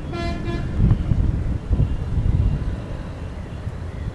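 A vehicle horn gives one short toot at the start, followed by a low rumble of road traffic.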